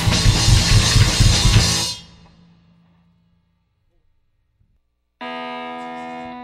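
A rock trio of electric guitar, bass guitar and drum kit playing loudly, then stopping together about two seconds in; the ringing dies away to near silence. Near the end a single steady electric guitar note starts and is held.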